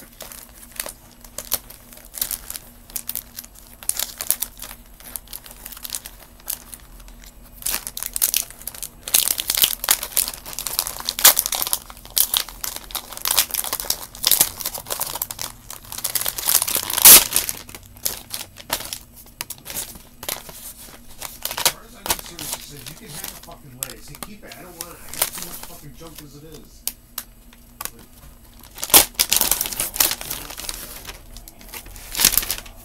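Packaging crinkling and rustling as it is handled and opened, in irregular bursts of crackles with one sharp, loud crackle about two thirds of the way through.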